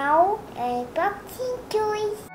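A little girl's voice in short sing-song phrases, with a few briefly held notes.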